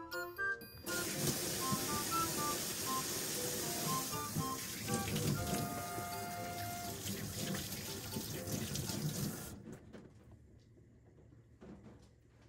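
Kitchen tap running into a stainless-steel sink during hand washing-up, a steady rush of water that stops about nine and a half seconds in. Light background music with short, plinking notes plays over it.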